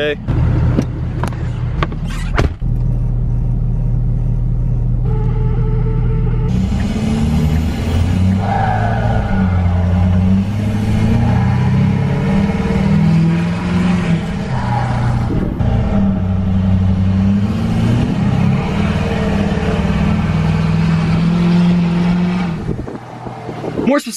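Straight-piped 6.7 L Power Stroke diesel of a 2011 Ford F-350 running with a steady low hum. From about six seconds in, music with a stepping bass line plays over it until just before the end.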